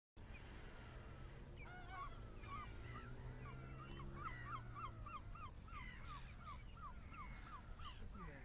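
Birds calling, one of them giving a quick regular series of short down-slurred call notes, about two a second, through the second half, with other calls scattered among them. A faint low steady hum runs underneath and fades out about halfway.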